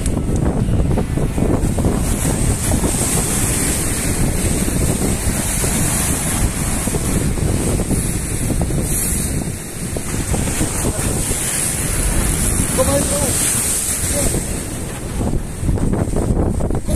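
Wind buffeting the microphone over the steady wash of surf breaking on the shore.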